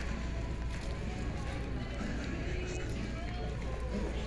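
Shopping-mall interior ambience: a steady low hum under faint, distant voices and background music, with footsteps on the tiled floor.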